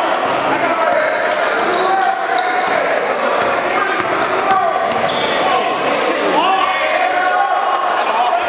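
Basketball bouncing on a gym's hardwood floor during play, with indistinct voices of players and spectators echoing in the large hall.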